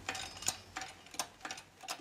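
A series of light clicks, about six in two seconds, unevenly spaced.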